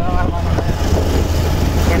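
Motorcycle engine running steadily under riding, with road and air noise from being on the move.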